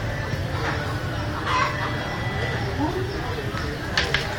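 Chickens clucking and a rooster crowing, mixed with people's voices.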